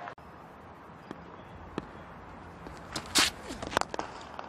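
Quiet cricket-ground ambience with a few faint clicks. Near the end comes a cluster of sharp knocks, among them the crack of a bat hitting a cricket ball.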